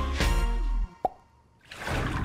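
Programme jingle music with a heavy bass line cuts off abruptly just under a second in. It is followed by a single short plop sound effect and, near the end, a soft rush of noise.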